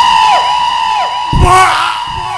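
A loud, steady high electronic tone with a dipping warble repeating about twice a second, a dramatic sound effect from the stage's keyboard synthesizer. A low thud comes about a second and a half in.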